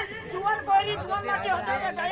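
Speech: several performers' voices talking over one another, picked up by the stage's hanging microphones.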